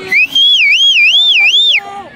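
A loud whistle that sweeps up, wavers up and down in pitch about twice a second, then drops away near the end.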